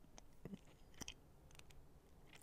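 Near silence: room tone with a few faint clicks, about half a second and a second in.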